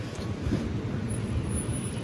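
Steady city street noise: a low rumble of passing traffic, with a faint thin high-pitched tone in the second half.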